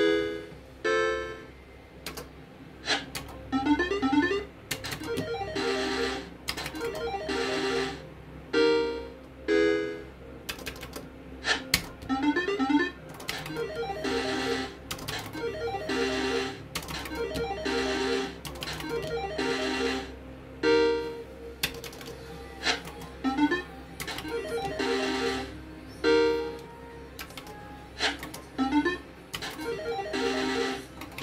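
Electronic slot machine sounding its short synthesized chime jingles and beeps as the reels spin and stop, a new burst every second or two, over a steady low hum.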